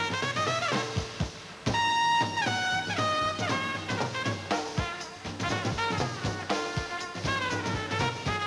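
Live big-band swing: a solo trumpet plays phrases with slides between notes over a drum kit. The level drops briefly about one and a half seconds in, then the trumpet comes back loud on a held high note.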